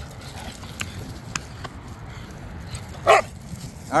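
A dog gives one short, loud bark about three seconds in, during rough play with other dogs, over a steady low rumble with a few faint clicks.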